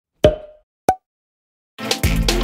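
Two short, bright pop sound effects, the second slightly higher in pitch, like cartoon bubbles popping into view. Upbeat intro music with drums starts just before the end.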